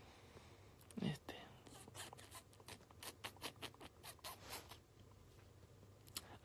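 Faint, quick light clicks, about three or four a second for about three seconds, after a brief murmur of voice about a second in: fingertip taps on a phone's touchscreen, heard through the phone's own microphone.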